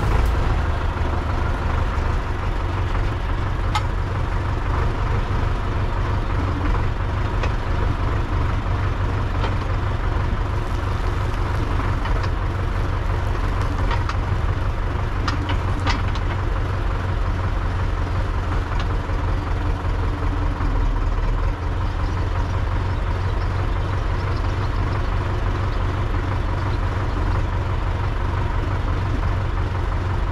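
YuMZ-6L tractor's four-cylinder diesel engine idling steadily, with a few faint clicks.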